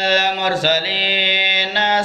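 A man's voice chanting through a microphone and loudspeakers, one long held melodic note that shifts pitch briefly about half a second in and again near the end.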